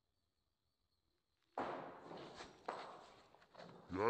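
About a second and a half of near silence, then a sudden rustling hiss with a few sharp clicks that slowly fades: footsteps and handling noise from a handheld camera. Just before the end comes a short vocal sound whose pitch rises and falls.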